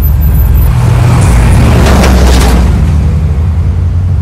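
A delivery truck driving past: low engine rumble and road noise swelling to a peak about two seconds in, then fading as it moves away.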